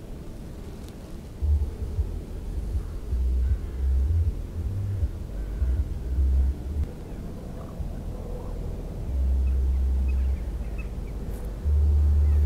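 Wind buffeting the microphone, a low rumble that comes and goes in uneven gusts lasting about half a second to a second and a half, over a faint steady background.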